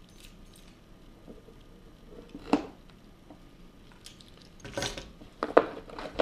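Keys clinking and a cardboard box being handled as it is opened: quiet scraping with a few scattered sharp clicks and knocks, the loudest near the end.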